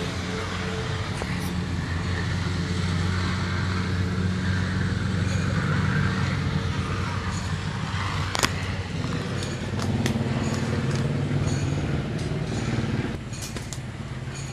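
A motor running steadily with a low hum, with one sharp click about eight and a half seconds in.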